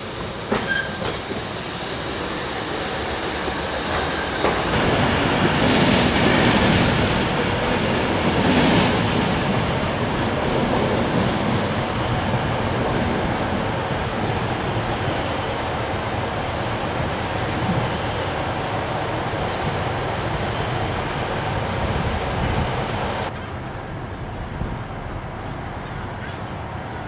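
A train moving on the station tracks: a steady rumble of wheels on rail with squealing and clatter, building a few seconds in and loudest around six to ten seconds in, then dropping suddenly near the end.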